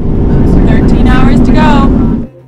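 Loud road and wind noise from a Sprinter van driving across a steel truss bridge, with a voice calling out twice in long, falling cries near the middle.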